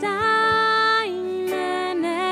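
A slow German worship song, sung with instrumental accompaniment: the voice holds a long note for about a second, then steps down to the next.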